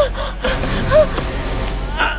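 A woman's short pained gasps and moans, several in quick succession, over a background music score.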